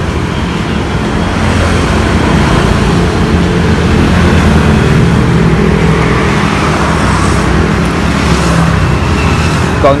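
Steady road-traffic noise: a continuous low rumble with no clear breaks or single events.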